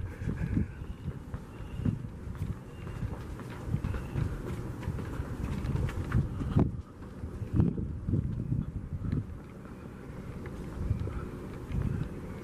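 Footsteps on a paved walkway with handheld-camera rumble and rustle as someone walks, the thuds coming unevenly. Faint short high tones come and go in the first three seconds.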